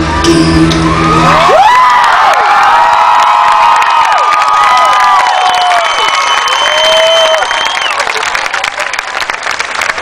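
The band's final chord rings out and stops about a second and a half in. Then a large outdoor crowd cheers and claps, with many rising and falling whoops, fading a little near the end.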